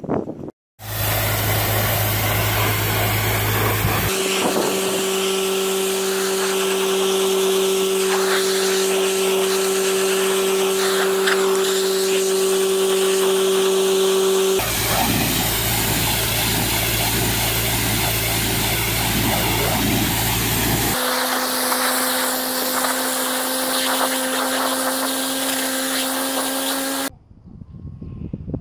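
Pressure washer running steadily, a constant pump hum under the hiss of the high-pressure water spray. The hum changes pitch abruptly three times and the sound cuts off sharply near the end.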